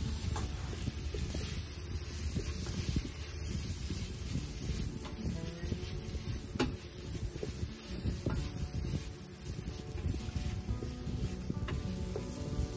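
Chopped onion and tomato sizzling in the stainless-steel inner pot of an Instant Pot on sauté mode, stirred with a wooden spatula that scrapes and now and then taps the pot. Soft background music plays underneath.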